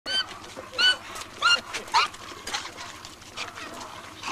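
A pig squealing while held down for slaughter: four loud, short, high-pitched squeals in the first two seconds, then weaker, ragged cries.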